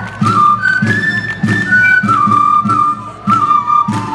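Andean folk dance music: a high flute melody over a steady drum beat, with the melody stepping and sliding between notes.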